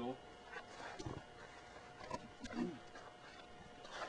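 Faint footsteps on the forest floor, a few soft irregular crunches, with a short low vocal sound about two and a half seconds in.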